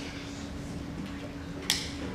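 A hand-held lighter struck once near the end: a single sharp click, lighting an Advent candle, over a steady low hum in the room.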